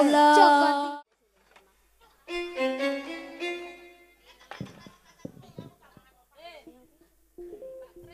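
Short stretches of stage band music: a loud held note that cuts off after about a second, then after a pause a held melodic phrase of a second and a half, ending in scattered quieter sounds, a few spoken words and another held tone near the end.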